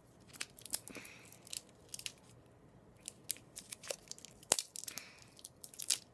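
Plastic sour-candy wrapper being handled and torn open, making irregular sharp crinkles and crackles.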